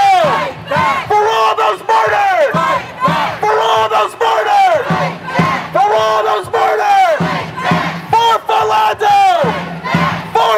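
Crowd of protesters chanting a short slogan in unison, shouting the same phrase over and over at an even pace of about one phrase every two seconds.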